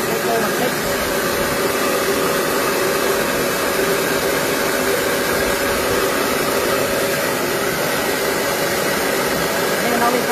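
Small electric household rice mill running steadily: an even machine hum over a constant rushing noise as grain passes through it and milled rice pours out.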